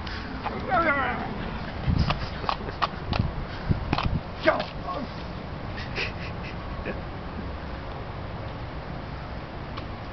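A dog gives a short wavering whine about a second in. Over the next few seconds come a run of thumps and knocks from running footsteps and the jostled camera.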